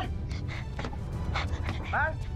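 Dramatic background music with a low, steady drone, under a voice calling out "Mahal!" at the start and again at the end. In between there are short scuffling knocks as a woman in an epileptic seizure is held down on a bed.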